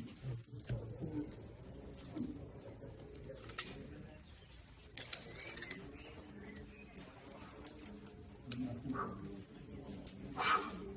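Climbing hardware clinking: a few sharp metallic clicks and a short jangle of carabiners and quickdraws about halfway through, over faint outdoor quiet.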